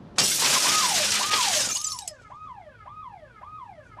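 A car's side window smashed, glass shattering loudly for over a second, then a car alarm going off in a repeating wail, a quick rise and falling sweep about twice a second.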